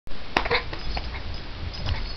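A dog taking off to leap over a cardboard box: a few sharp clicks in the first second and a brief whine about half a second in, over a low rumble.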